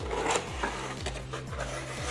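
Cardboard rubbing and scraping as a gift-style box is slid out of its sleeve and its lid is lifted open, with a few light knocks.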